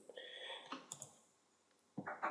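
Faint computer mouse clicks, a couple of them about a second in, preceded by a brief faint high tone.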